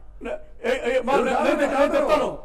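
A man speaking, briefly pausing at first and then talking on through a microphone.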